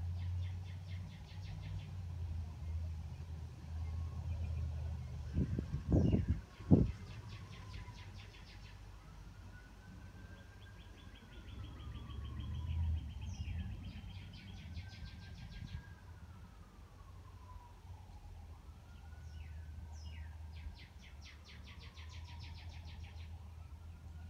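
Birds singing: several rapid high trills lasting a second or two each, and slow slurred whistles that rise and then fall, over a low steady rumble. Two sharp thumps about six seconds in.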